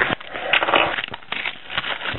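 Plastic wrapping on a sealed trading-card pack crackling and rustling as it is sliced open by hand, with several sharp clicks.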